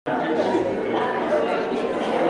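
A church congregation chatting all at once as people greet one another during the sharing of the peace: many overlapping voices in a large hall, with a brief dropout at the very start.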